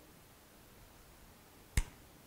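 A first-pattern LeMat revolver being handled as its barrel assembly is unscrewed by hand: mostly quiet, with one sharp click near the end.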